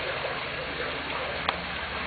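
Steady splashing of running fountain water, with a single short click about one and a half seconds in.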